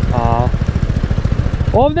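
A 250 cc motorcycle engine idling, a fast, even low pulsing.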